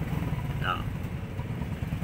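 An engine idling steadily in the background: a low rumble with fast, even pulses.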